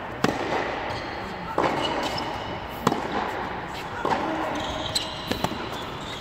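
Tennis balls struck hard by a racket and bouncing on an indoor hard court: sharp pops roughly every second or so, each followed by a short echo in the hall, with voices in the background.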